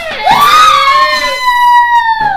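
A girl's long, high-pitched scream, held at a nearly steady pitch from about a third of a second in.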